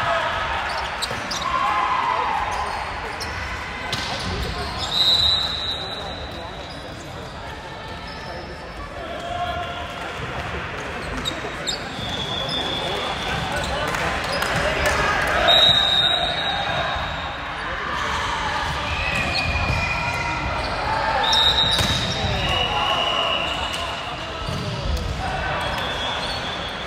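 Indoor volleyball play in a large hall: sharp hits of the ball, players calling out to each other, and short high-pitched tones now and then.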